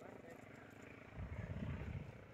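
Faint voices, then an uneven low rumble of wind on the microphone that builds about a second in.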